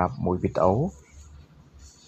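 A narrator's voice speaking for about the first second, then a faint low hum.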